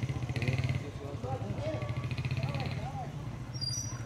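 A motor running steadily with a low, rapidly throbbing hum, like a motorcycle or small engine idling, with faint voices of people in the background.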